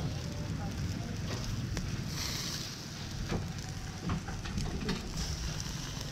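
Skewered frogs grilling over a charcoal fire: sizzling hiss and scattered small crackles and pops from the meat and embers, over a steady low rumble.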